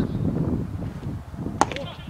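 A pitched baseball striking with one sharp crack about one and a half seconds in, over low background voices.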